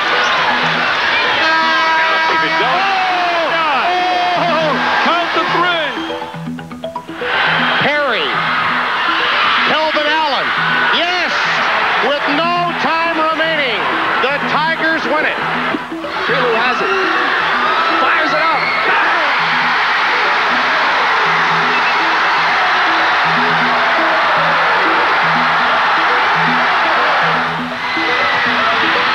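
Music with a steady beat mixed over basketball game audio: an arena crowd cheering and yelling, with excited shouting, swelling into a continuous roar in the second half.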